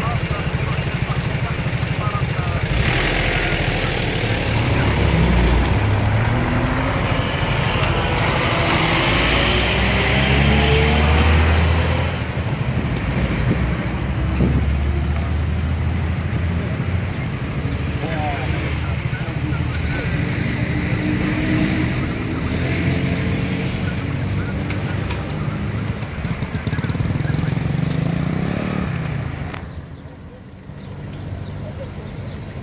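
Small motorcycle and scooter engines running and revving up several times, over the rumble of passing road traffic, with voices talking.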